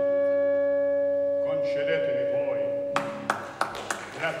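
An orchestra holds one long steady note under a spoken line. About three seconds in the note cuts off and hand clapping begins.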